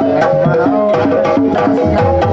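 Live Banyumas-style gamelan music accompanying an ebeg dance: hand-drum (kendang) strokes over a steady, repeating pattern of tuned percussion notes.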